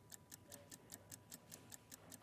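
Faint, rapid ticking, about seven ticks a second, from a countdown-clock sound effect over near silence.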